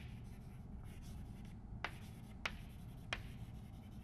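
Chalk writing on a chalkboard: faint scratching of the chalk across the board, with three short taps in the second half as the chalk strikes it.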